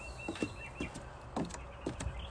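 Footsteps going down wooden deck stairs, about four footfalls. A bird gives a quick run of short high chirps in the first second.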